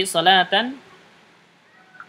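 A voice speaking for about the first half-second, ending a phrase, then quiet room tone for the rest.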